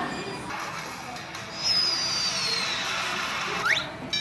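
Cartoon-style electronic sound effects over music from a restaurant touch-screen display playing an animation: a high whistle falls slowly with a hiss behind it, then a quick rising sweep comes near the end.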